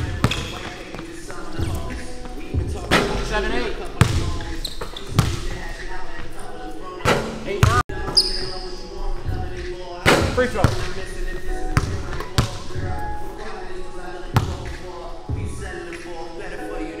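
Basketball bouncing on a hardwood court during dribbling drills: sharp, irregularly spaced bounces, a second or two apart.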